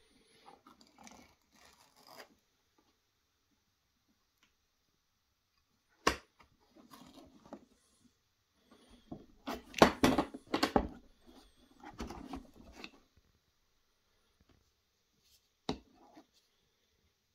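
Handling noise as Dremel accessories are lifted out of the foam insert of a metal carry case: a sharp click about six seconds in, a busy spell of knocks, rustles and plastic clatter in the middle that is the loudest part, and one more short click near the end.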